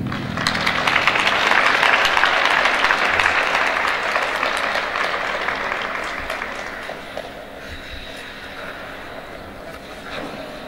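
Applause from a small audience, starting just after the music ends and dying away over about seven seconds.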